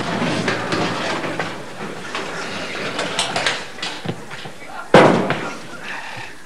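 A run of knocks and clatters with a loud bang about five seconds in, the loudest sound here, and voices underneath.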